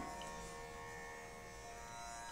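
A faint, steady drone that holds one pitch with many overtones: the sruti drone that sounds beneath Carnatic singing.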